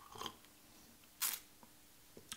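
A person sipping espresso from a cup: a short, soft sip near the start, then a louder slurp about a second later.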